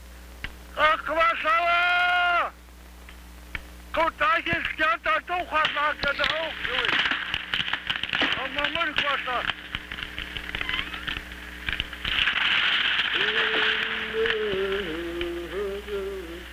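A voice gives a long held cry, then a run of short, quickly sliding chanted syllables, over a crackling, rustling noise that swells from about six seconds in. Near the end a low, stepwise humming tune comes in.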